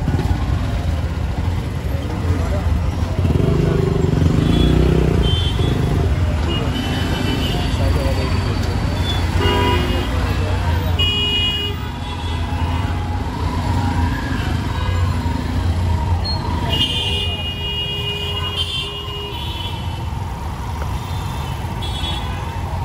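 Congested city-street traffic: engines running among rickshaws, auto-rickshaws, motorbikes and cars, with short horn toots around ten seconds in and a longer horn blast near seventeen seconds, over people's voices.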